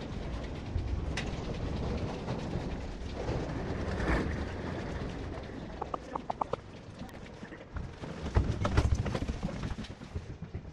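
Footsteps on a hard terminal floor while walking, with low rumbling handling and movement noise, a quick run of short high squeaks about six seconds in, and a cluster of louder thumps near the end.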